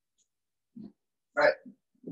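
A person's voice: a short low vocal sound about a second in, then the spoken word "Right".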